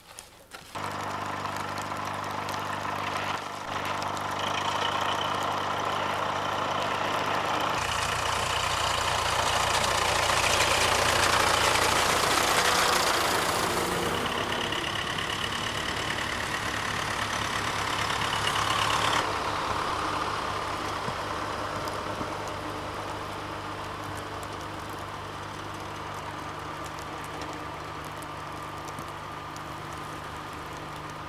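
Tractor engine running steadily with a snowplough blade pushing snow. The sound starts abruptly just under a second in, grows louder and noisier through the middle for about ten seconds, then settles back to a steadier, quieter engine note.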